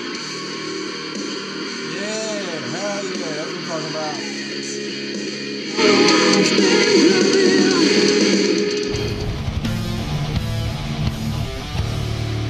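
Metal song by a German metal band playing: distorted electric guitar and drums under a woman's singing. It gets louder about six seconds in, with a heavier low end from about nine seconds in.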